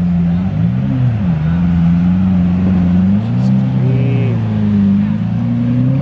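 Lamborghini Aventador's V12 engine driving slowly past close by, its revs rising and falling twice.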